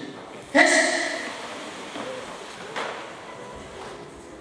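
A voice calls out briefly about half a second in, then the sound fades to low room noise with one light tap near three seconds.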